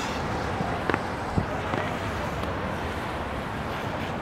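Rainy city-street noise: a steady hiss of traffic on wet roads, with a couple of brief knocks around a second in.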